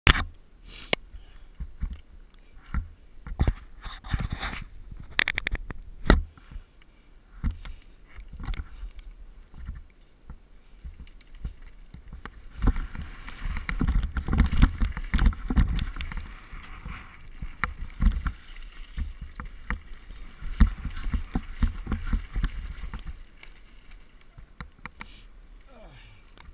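Mountain bike ridden over a dirt pump track, heard from a helmet-mounted camera: a low rumble of tyres on dirt and moving air, with frequent knocks and rattles from the bike over the bumps. It is busiest and loudest from about 12 to 23 seconds in, then settles.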